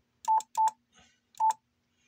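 Three short, steady beeps from a Yaesu FT-710 transceiver as its menu is stepped through. The first two come close together and the third about a second later, each with a small click.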